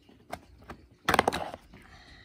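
Plastic snap-on lid being pulled off a plastic tub of catnip: a few light clicks, then a loud crackling snap of plastic about a second in.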